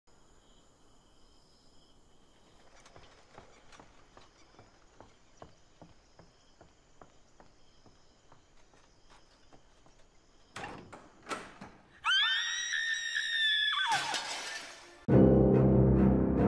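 Faint, evenly spaced steps, then a few sharp crashes like a tray of crockery dropped and breaking, then a woman's long, high scream that falls away at the end. About a second before the end, loud dramatic orchestral music with timpani cuts in.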